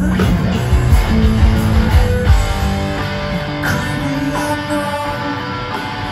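Heavy rock band playing live through a big outdoor PA: distorted electric guitar with bass and pounding drums. About two seconds in, the drums and heavy low end drop back, leaving held, ringing guitar notes.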